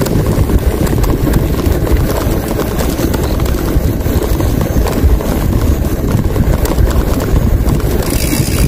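Wind buffeting the microphone of a moving bicycle, a loud steady low rumble, with tyre noise from rolling along a concrete bike path.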